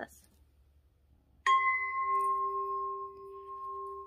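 A singing bowl struck once about one and a half seconds in, then ringing on with a steady, slowly fading tone near 396 Hz, the solfeggio "Ut" tone, with a higher overtone sounding above it.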